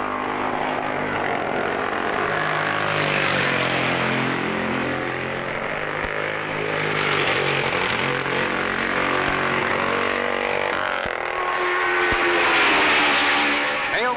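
Racing motorcycle engines running at high revs, their pitch sliding up and down and the sound swelling and fading several times as machines pass, loudest near the end.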